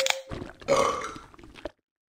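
A sharp crack, then a person lets out a long, loud burp lasting about a second and a half that cuts off suddenly.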